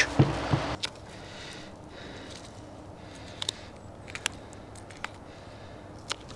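A brief rustle and low thump as a roe deer carcass is lifted and turned on the table. This is followed by quiet knife work along the backbone, with a few faint clicks.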